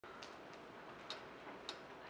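Faint hall ambience with four light, sharp clicks spaced about half a second apart.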